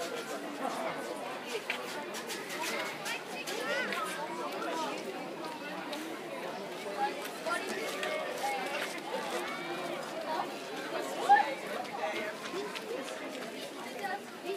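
Indistinct chatter of many people talking at once, with no single voice clear; one voice rises briefly louder near the end.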